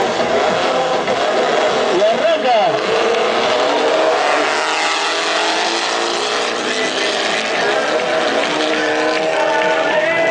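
Several race car engines revving and accelerating on a mud track, their pitch rising and falling as they pull away and pass, over a steady din of noise.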